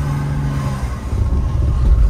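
Old Mercedes W126 saloon driving slowly, heard from inside the cabin: a steady low hum for about the first second, then low rumbling and thumping from the running gear, loudest near the end, as the car rolls on a flat tyre.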